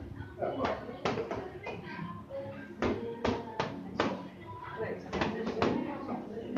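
Boxing gloves landing punches on pads: a dozen or so sharp smacks in quick, uneven clusters of two to four.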